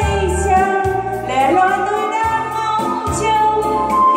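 A woman singing through a handheld microphone, accompanied by an electronic keyboard playing sustained bass notes under a steady beat.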